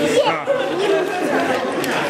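A crowd of adults and children chattering, many voices overlapping at once.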